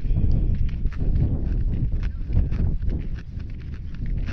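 Footsteps of someone walking at a steady pace on a concrete walkway, about two to three steps a second, over a continuous low rumble on the microphone.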